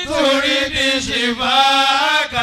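A man's voice chanting in long, wavering held notes, with short breaks between phrases, through a microphone.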